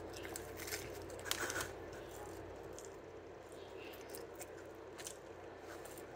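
Crisp Domino's thin pizza crust crunching as it is bitten and chewed: a cluster of crunches in the first second and a half, loudest about a second and a half in, then a few faint crackles.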